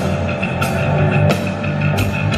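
Live rock band playing loud through a concert PA, with electric guitar and a drum kit whose heavy hits land on a steady beat.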